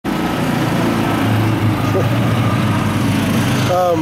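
Small petrol engine of a utility vehicle running steadily close by, cutting off sharply near the end; a voice starts just as it stops.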